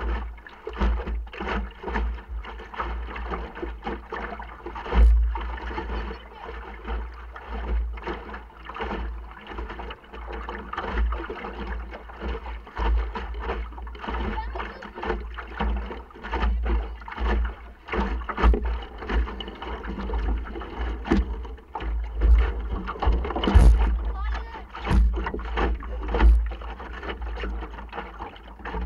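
Wind buffeting the microphone of a camera mounted in a small sailing dinghy under way, with a deep continuous rumble and irregular knocks and slaps of water against the hull.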